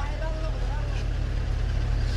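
A motor vehicle engine idling close by: a steady low rumble, with faint voices over it.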